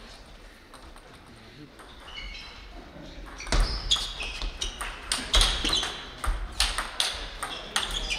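Table tennis rally: the ball clicks off the bats and the table in an irregular run of sharp ticks. The run starts about halfway in, after a few quiet seconds while the serve is readied.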